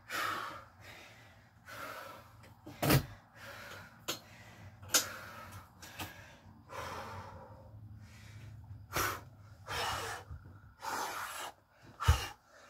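A man breathing heavily, with a string of loud gasping breaths as he catches his wind after a set of chair dips. A sharp knock about three seconds in is the loudest single sound, with a few smaller clicks later.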